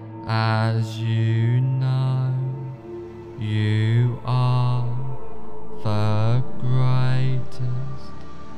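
Meditation music with a low chanted vocal drone: held notes lasting a second or two each, the vowel sound slowly shifting within each note, with short breaks between them.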